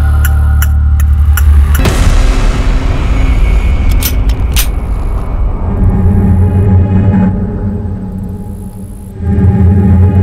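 Tense background score with a low, sustained drone. The music changes about two seconds in, has a couple of sharp hits in the middle, and swells back up after a brief dip near the end.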